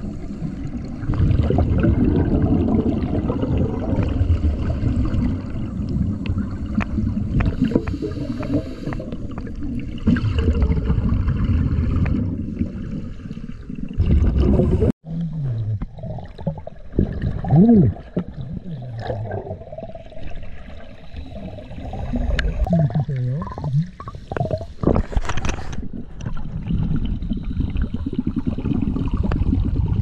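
Scuba divers' exhaled bubbles from their regulators, recorded underwater: low gurgling and rumbling in repeated surges, with a few short wavering tones. The sound cuts out abruptly for a moment about halfway.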